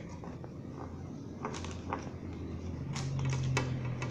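Light clicks and knocks of a plastic electric-fan blade being handled, turned over and wiped with a cloth, several scattered through the second half. A low steady hum comes in near the end.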